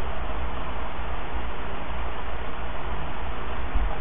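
Steady background hiss with a low hum underneath and no distinct events: the noise floor of the recording.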